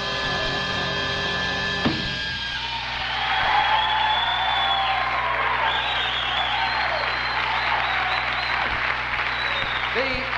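Big band with drum kit holding its final chord, which ends on a sharp hit about two seconds in. Then the audience applauds and cheers.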